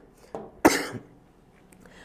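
A man coughing: one short, sharp cough about two-thirds of a second in, after a fainter one just before it.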